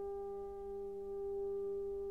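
Orchestra holding one long, steady note, with a fainter lower note sounding beneath it.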